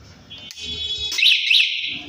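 Walton Takyon electric bike's alarm sounding as its power is switched on. It gives a high electronic tone about a third of a second in, then two loud warbling chirps near the end.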